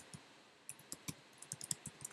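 Typing on a computer keyboard: a quick, irregular run of key clicks beginning under a second in, after a couple of single taps at the start.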